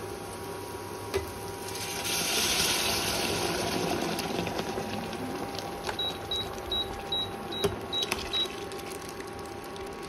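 Liquid hitting the hot masala in a kadai: a sizzling hiss that swells about two seconds in and fades over the next few seconds as the pot comes to a bubbling boil. From about six seconds in comes a run of about eight short, high beeps from the induction cooktop's touch buttons as its setting is changed.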